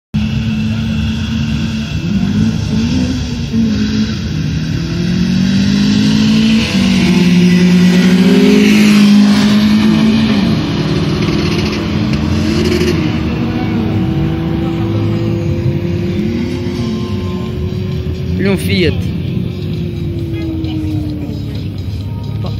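Car engine accelerating hard down the strip, revving up and dropping back at each gear change, loudest around eight to nine seconds in, then fading as the car gets farther away.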